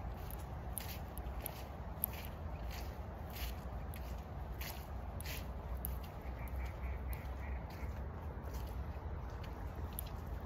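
Footsteps of someone walking on a woodland path in soft barefoot sheepskin boots, with a light crunch about twice a second over a low steady rumble.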